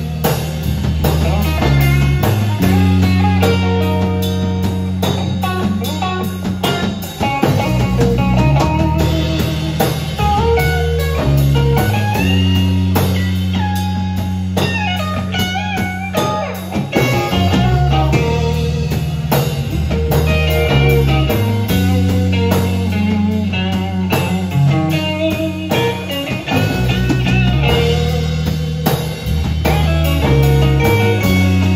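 Live band playing an instrumental passage on electric guitar, electric bass and drum kit, the lead guitar bending notes over a steady bass line and drum beat.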